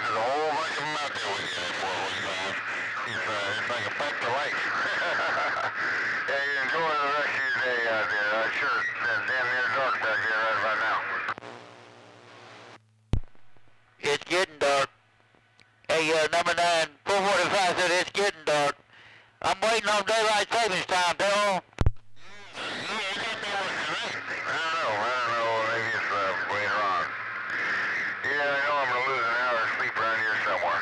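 Voices of distant stations received over a CB radio, buried in static and a low hum. About halfway through, the signal drops out, then cuts in and out in choppy bursts for several seconds, with a sharp click at the start and end of that stretch.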